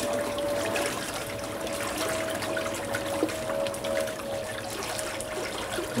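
Propeller of a Nissamaran 50 lb 12 V electric trolling motor churning water in a barrel, a steady rushing and splashing, with a faint steady whine running under it.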